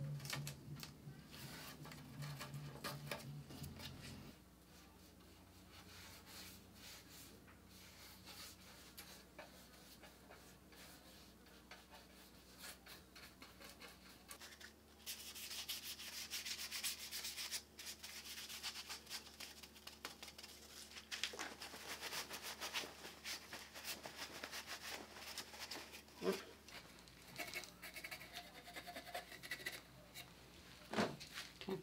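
Paint being brushed and wiped onto wood: a brush dragged lightly across wet paint, then a rag rubbing black glaze onto and off a wooden leg, the rubbing strongest in the middle. Quiet throughout, with a few light knocks near the end.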